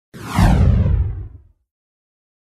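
Intro-logo whoosh sound effect: a sweep falling in pitch over a low rumble, about a second and a half long, then it stops.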